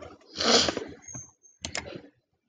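Clicking at a computer: a short burst of noise about half a second in, then a quick pair of sharp clicks near the end.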